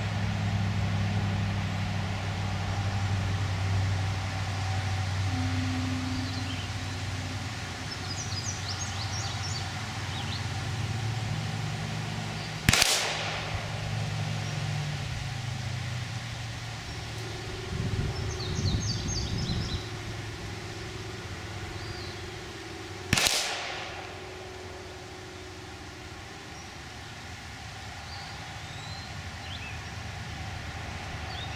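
Two shots from a Glock 26 9 mm subcompact pistol, about ten seconds apart, each a sharp crack with a short tail. A low steady drone fades out before the second shot, and birds chirp faintly between the shots.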